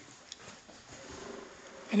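Quiet room tone in a pause between speech, with a faint steady hum about a second in. A voice starts just at the end.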